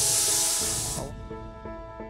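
Compressed-air spray gun hissing as it mists udder spray, cutting off sharply about a second in. Soft background music runs under it.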